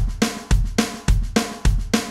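Electronic drum kit playing a basic train beat: a steady single-stroke roll on the snare with accents on two and four, and the bass drum on one and three, landing about twice a second.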